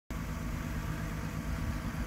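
Steady low hum of a car engine idling.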